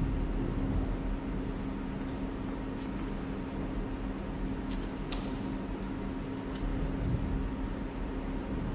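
A steady low hum, with a few faint short rustles or clicks about two and five seconds in.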